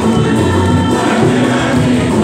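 Church choir singing a communion hymn, many voices together in a steady, continuous song.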